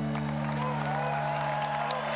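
The last chord of a mahogany Weissenborn-style Hawaiian lap slide guitar ringing out, its low notes holding steady, while a large crowd starts applauding and cheering.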